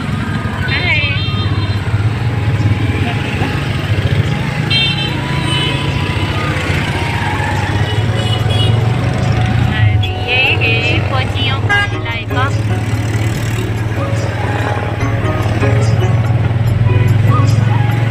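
Auto-rickshaw engine running with a steady drone as it drives through street traffic, with vehicle horns tooting several times.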